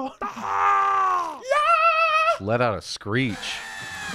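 Exaggerated, drawn-out vocal cries: a long note sliding down in pitch, then a high wavering held note, a few quick syllables, and another falling cry near the end.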